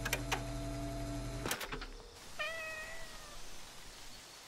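Clicks and a steady electric hum from a jukebox for about a second and a half, ending with a click. Then a cat meows once, about two and a half seconds in.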